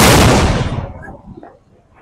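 A large firecracker (a 'bomb') going off on the road with one loud bang that dies away over about a second.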